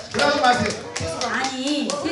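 A small group clapping in uneven, scattered claps, with several voices talking and calling out over them.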